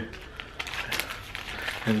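Paper fast-food wrapper crinkling as a burrito is handled and unwrapped, a run of small irregular crackles.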